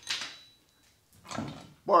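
Loose chainsaw chain rattling briefly as it is lifted off the bar, then a second short handling noise about a second later as the bar is taken off.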